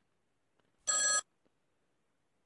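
A single short electronic telephone ring, lasting about a third of a second, made of several steady high pitches sounding together.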